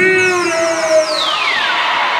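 Live hip-hop concert music through the venue's sound system: a held electronic tone, then a high sweep falling steeply in pitch over about a second.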